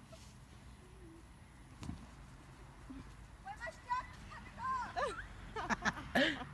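Voices shouting and squealing at a distance from about halfway through, over a low outdoor hum, with one short dull thump about two seconds in.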